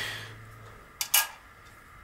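Hand-handling noise of a small metal part and tool: two short, sharp scraping clicks about a second in, after a brief fading hiss at the start.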